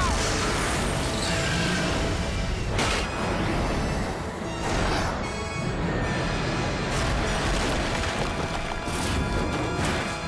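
Dramatic action music over cartoon battle sound effects: a continuous rushing noise with a few sharp booms, about two seconds apart.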